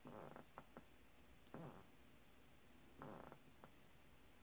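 Near silence broken by three soft, short scrapes and a few light taps: a diamond painting pen picking square resin drills out of a plastic tray and pressing them onto the canvas.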